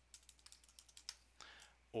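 Faint computer keyboard typing: a quick run of key clicks as a password is typed into a login box.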